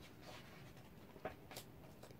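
Very faint paper sounds of a picture-book page being turned: a soft rustle with a couple of small ticks just past the middle, otherwise near silence.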